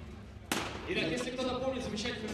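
A sudden sharp knock about half a second in, followed by a voice speaking indistinctly.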